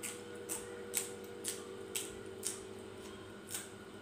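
Close-miked chewing of a mouthful of sticky rice: short wet mouth clicks and smacks, about two a second, with one stronger click about a second in.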